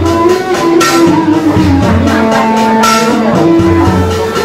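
Vietnamese funeral music (nhạc hiếu): a held melody line stepping between sustained notes, with a loud crashing strike twice, about two seconds apart.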